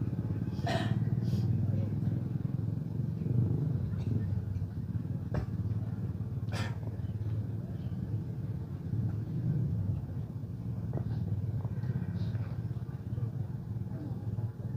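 Background sound of an outdoor gathering: a steady low rumble with indistinct voices, and a few sharp clicks, about a second in and again near the middle.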